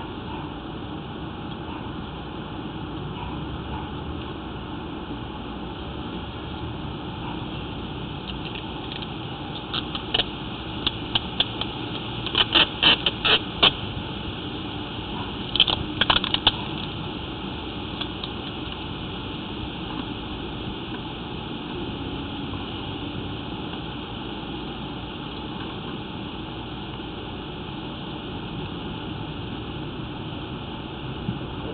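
A steady machine-like running noise, with a run of sharp clicks or taps from about ten to seventeen seconds in, loudest around thirteen and sixteen seconds.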